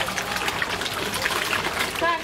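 A dense school of golden fish thrashing at the water surface during feeding: continuous splashing made up of many small, quick splashes.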